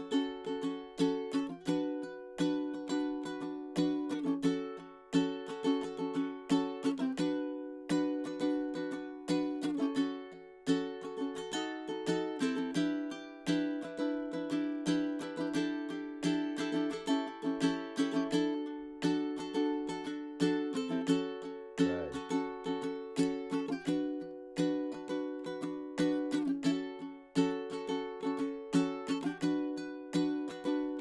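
A ukulele strummed in a steady rhythm through a chord progression of D, F-sharp minor, B minor, B7, E minor 7, A7sus and A7. About halfway through there is a stretch where the chords are left to ring with fewer strokes.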